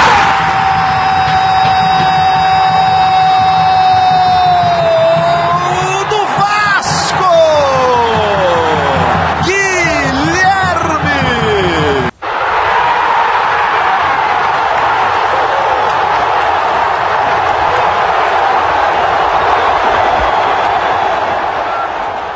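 A man's drawn-out goal shout held on one long note for about five seconds, followed by wavering cries that swoop down in pitch. After an abrupt cut about twelve seconds in, steady crowd noise from the stadium.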